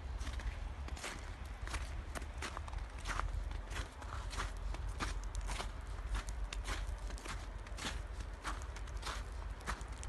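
Footsteps crunching on fresh snow at a steady walking pace, about two to three steps a second, over a steady low rumble.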